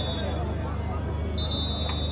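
Referee's whistle blown in long steady blasts for full time: one blast ends about half a second in and another starts past the middle and runs on, over steady background noise.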